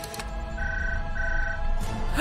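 A telephone ringing twice in short electronic beeps of the same high pitch, each about half a second long, over dramatic background music with a low rumble.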